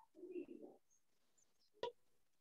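A dove cooing faintly in one low phrase, then a single sharp click near the end.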